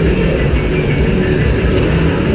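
Loud, steady din of an indoor mall ice rink: a low rumble with music mixed in, and no single event standing out.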